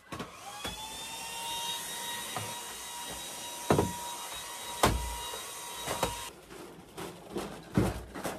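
Stick vacuum cleaner running with a steady whine. Its pitch climbs briefly as it starts just after the beginning, and it cuts off about six seconds in. A few sharp knocks come as it bumps along the floor, followed by quieter clicks of handling.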